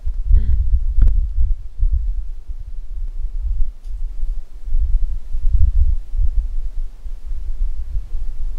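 Deep, uneven rumble that swells and fades irregularly, with no voice, a faint short vocal sound about half a second in and a click about a second in.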